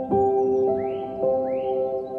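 Slow, gentle solo piano music, single notes ringing on, with a recording of birds mixed in: two short rising chirps about a second in, over the piano.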